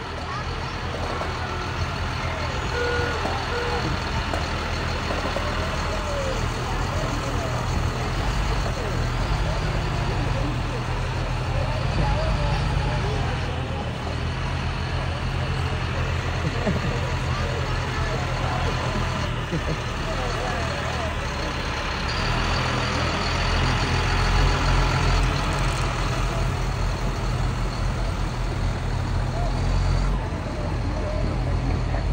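A heavy military cargo truck's diesel engine running low and steady as it rolls slowly past, with people talking in the background.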